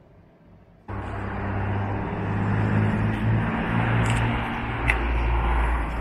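Steady car and road noise with a low engine hum, starting suddenly about a second in after a quiet moment.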